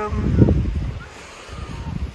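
Wind buffeting the microphone in gusts, strongest in the first half second and then easing, over faint sea surf on a pebble beach.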